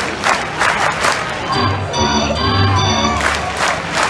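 Baseball crowd chanting in rhythm, answered by a ballpark organ that plays a short phrase of held notes about halfway through, before the crowd comes back in near the end: an organ-and-crowd chant.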